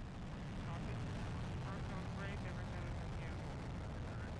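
Soyuz rocket's first stage, four strap-on boosters and the core engine, rumbling steadily as it climbs just after liftoff, with faint voices underneath.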